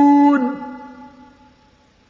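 A male reciter's voice in mujawwad Quran recitation, holding a long, steady note that breaks off about half a second in and then fades out in an echo.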